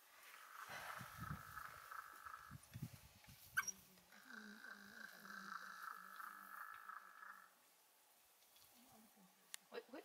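A bird calling faintly in long, steady, high trills, twice, each lasting two to three seconds, with a short sharp chirp between them.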